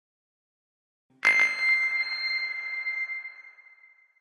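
A single bell-like chime struck about a second in, ringing at one clear high pitch and slowly fading away over about three seconds, a sound logo over the closing brand card.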